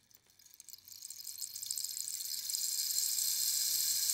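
A high, steady hiss that swells gradually from silence, growing louder throughout, with a faint low hum underneath.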